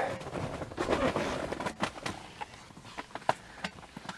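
Rustling and scattered light knocks from a handheld camera being moved around inside a minivan, with no steady tone or rhythm.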